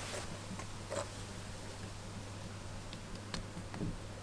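A few faint, short clicks and ticks of a spatula and a plastic tub of Stone Fix being handled as the paste is scooped out, over a steady low hum.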